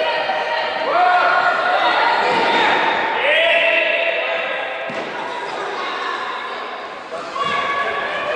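Children's voices shouting and calling across an echoing sports hall, with the thuds of a football being kicked and bouncing on the wooden floor.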